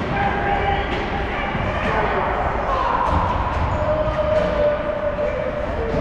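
Ice hockey play in an echoing rink: shouted calls from players or the bench, including one long drawn-out call near the end, over knocks and thuds of sticks and puck.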